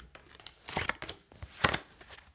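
A deck of tarot cards being handled and shuffled: a few short papery swishes of cards sliding against each other, the loudest about one and a half seconds in.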